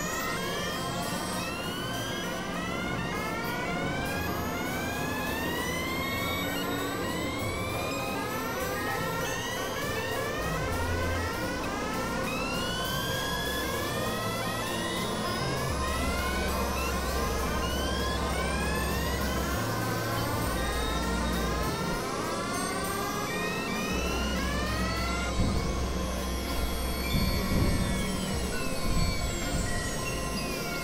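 Experimental electronic synthesizer music: a steady drone under a stream of overlapping rising pitch sweeps, with low bass notes that come and go in the second half.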